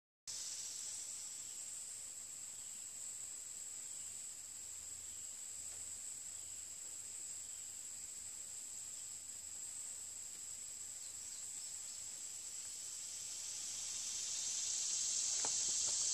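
Steady chorus of insects in summer woodland, an unbroken high-pitched drone that grows a little louder near the end.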